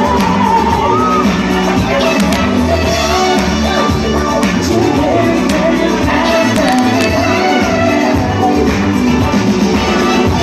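Live band playing loud, steady music in a crowded club.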